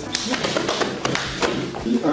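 Rapid slaps and thuds of a hand-to-hand exchange: open-hand strikes and blocks landing on arms and gi sleeves, many sharp hits in quick succession.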